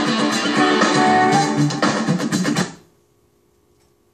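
Rock band playing live, with strummed acoustic guitar, electric guitar and bass, heard from a television set. The music cuts off abruptly about three quarters of the way through, leaving only a faint steady hum.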